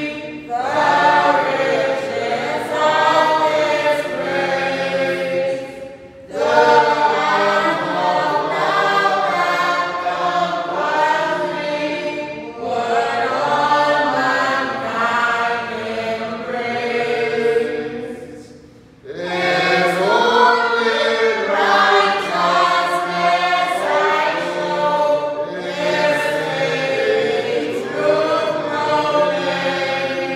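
Choir singing a slow hymn in long phrases, with short breaks about six seconds in and again just before twenty seconds.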